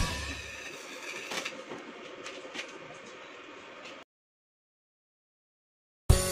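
Rock music cuts off at the start, leaving faint workshop background with a few light clicks for about four seconds, then dead silence for about two seconds.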